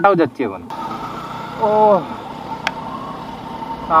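Motorcycle running along a road, a steady hum with a faint whine, and a single click a little before the end.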